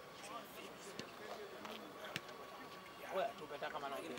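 Men's voices chattering and calling out across an open football pitch, one voice louder about three seconds in, with a few short sharp knocks.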